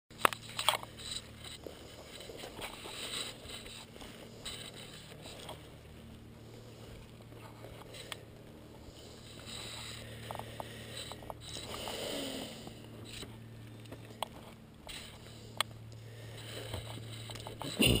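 Handling noise from a body-worn camera as its wearer moves through dry brush: scuffing footsteps, twigs scraping and scattered knocks over a steady low hum.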